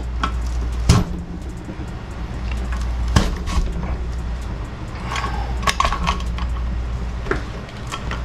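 A potato forced through a lever-action french fry cutter's blade grid: metal clacks and scraping from the cutter's plunger and frame, with two sharp knocks about one and three seconds in.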